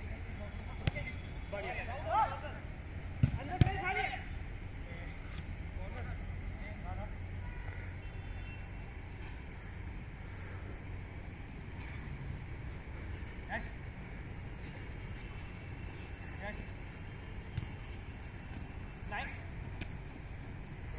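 Footballers' distant shouts and a few sharp knocks of a football being kicked on an artificial turf pitch, over a steady low background hum.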